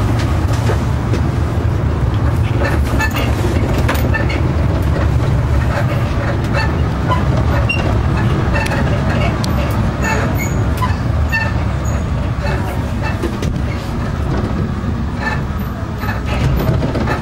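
Ride noise inside a moving bus: a steady low rumble of the engine and road, with scattered small rattles and squeaks from the body.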